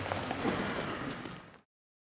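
Background noise of a large hall with people moving about. It fades out and drops to dead silence about one and a half seconds in.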